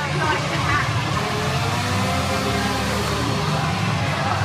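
A brief laugh, then steady outdoor crowd ambience: a low rumble with faint distant voices.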